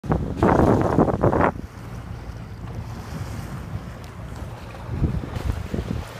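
Wind buffeting the microphone on a moving boat, loudest in the first second and a half and gusting again near the end, over water rushing past the hull and a steady low drone.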